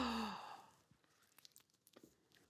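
A man's drawn-out vocal sound, falling in pitch and trailing off breathily like a sigh within the first half-second. Then near silence with a few faint clicks.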